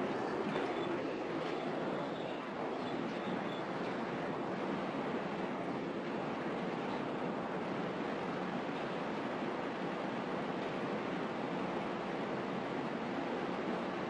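Steady, even hiss of background room noise picked up by an open classroom microphone, with no speech.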